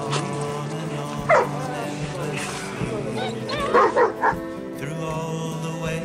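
Bernese mountain dogs barking: one bark about a second in and a quick run of barks around four seconds, over background music.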